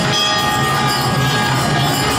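Temple bells ringing continuously and densely over music, as during the lamp-waving aarti.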